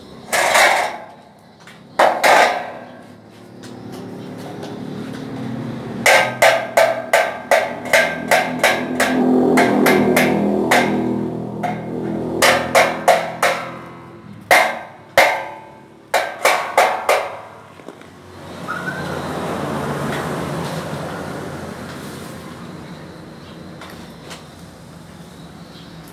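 Hammer striking a light-steel roof-truss channel with sharp, ringing metallic knocks: two single blows near the start, then quick runs of several strikes through the middle. A steady hum rises and falls underneath.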